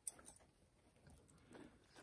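Near silence: a sharp click right at the start, then faint clicks and rustles of costume jewelry being handled.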